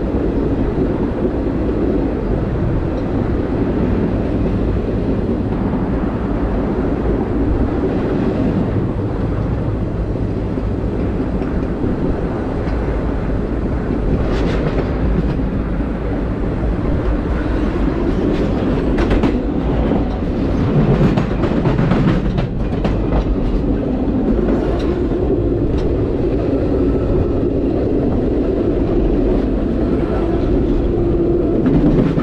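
Steady rumble of a passenger train's wheels rolling on the rails, heard from the rear open platform of the last car. In the middle stretch, sharp clacks come every so often as the wheels pass over the rail joints and switches of an interlocking.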